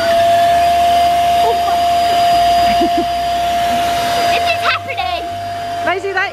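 Zuru electric party pump running steadily, a loud rush of air with a steady whining tone, as it inflates a bunch of self-sealing party balloons. About five seconds in the rush of air drops away while the motor's tone carries on.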